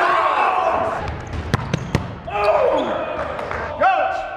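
Men shouting and calling out on a practice court, with two sharp thuds of a soccer ball on the hardwood floor about a second and a half and two seconds in, and a rising whoop near the end.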